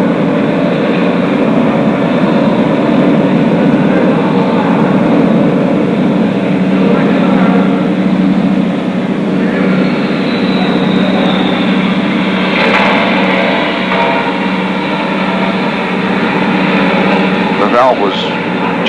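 Steady, loud machinery drone with a low hum that holds without a break, with a faint falling whine about ten seconds in.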